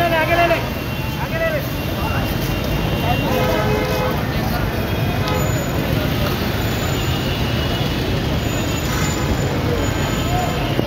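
Steady low rumble of street traffic and vehicle engines, with brief shouted voices breaking through a few times.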